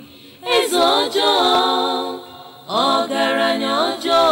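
Unaccompanied singing voices: a sung phrase starting about half a second in, a brief pause, then a second phrase from about two and a half seconds in.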